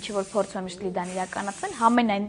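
One long hiss from an aerosol spray can, cutting off sharply about one and a half seconds in, under a woman's speech.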